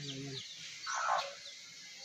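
Small birds chirping in a quick run of short, falling notes, with a louder, lower call lasting about half a second a second in.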